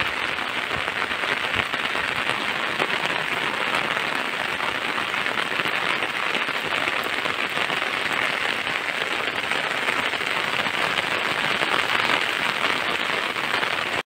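Rain falling steadily on a flat concrete rooftop: an even patter of many small drops on the wet surface.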